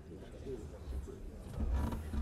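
Low murmur of many voices talking quietly in a large chamber, over a low rumble of room noise, with a louder burst of sound near the end.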